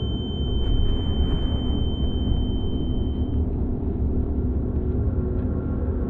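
Deep, steady rumbling drone, with a thin high steady tone over it that cuts off about three and a half seconds in.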